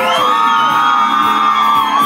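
Loud bar music with a high voice holding one long whoop that starts at the beginning and stays at nearly one pitch.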